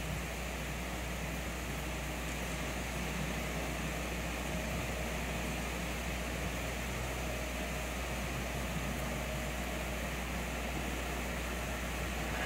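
Steady low hum with an even hiss, unchanging throughout, with no distinct sounds over it: the background noise of the broadcast's audio feed.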